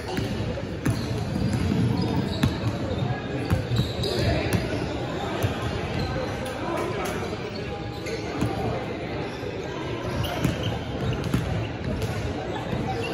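A basketball bouncing on a hardwood gym floor in irregular single thuds, amid the voices of players and onlookers in a large indoor gym.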